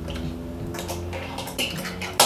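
Fingerboard rolling across a wooden surface: a low steady rumble from its wheels, with a light click about a second and a half in.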